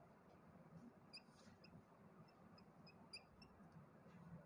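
Faint, short, high-pitched squeaks of a marker pen drawing on a whiteboard: a couple about a second in, then a run of them in the second half, over low room hum.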